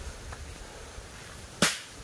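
A single sharp crack about one and a half seconds in, with a short fading tail.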